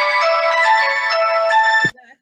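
Phone ringtone playing an electronic melody of changing notes, cut off abruptly with a click near the end.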